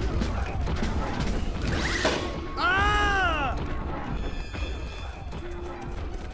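Cartoon football-play sound effects over music: a crash at the start, then a low scuffling rumble, and a pitched sound that rises and falls about three seconds in.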